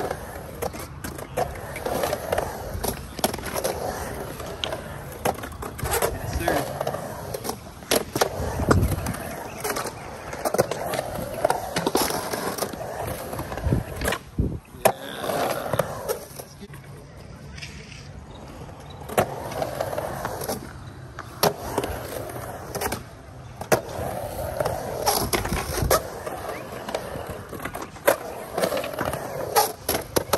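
Skateboard wheels rolling across a concrete pool bowl, swelling and fading as the skater carves up and down the walls. Sharp clacks of the board and trucks come off the pool coping, the loudest near the end.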